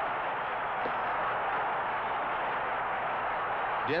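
Steady, even hiss-like noise on an old film soundtrack, with no distinct sounds standing out of it.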